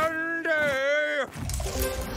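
A cartoon owl's voice drawing out the word 'day' for about a second over background music, followed near the end by a low rushing noise.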